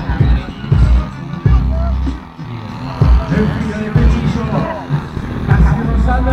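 Loudspeaker music with singing, over irregular low thumps in the bass.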